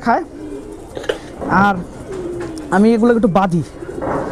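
Domestic pigeons cooing. There is a short falling call about a second and a half in and a longer, wavering call near the end.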